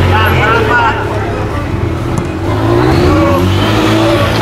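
A steady, low motor-vehicle engine drone, rising in pitch a little past halfway as if accelerating. Wavering shouted voices come over it about a second into the sound.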